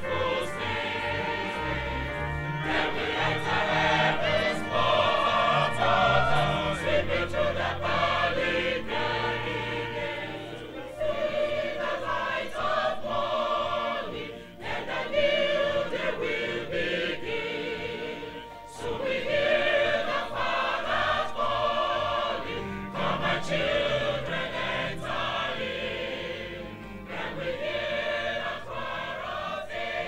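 A mixed church choir singing a hymn in sustained phrases with short breaks between them, accompanied by an organ holding low notes.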